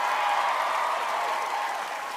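Studio audience applauding, with a few voices calling out above the clapping.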